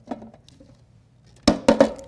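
Three or four quick sharp knocks of a hard object against a glass surface, about one and a half seconds in.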